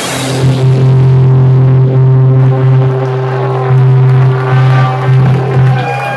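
A single low note from the rock band's amplified instruments held and ringing out at the end of the song, swelling and dipping in loudness, with the drums stopped.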